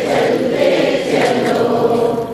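A roomful of people singing a line of a Hindi song together, repeating it after the song leader, many voices blending into one continuous, steady chorus.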